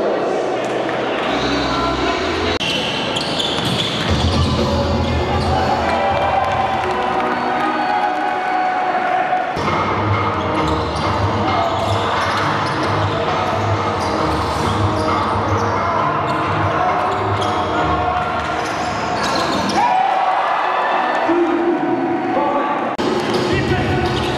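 Basketball game sound on an indoor hardwood court: a ball being dribbled, with music and voices in the hall behind it.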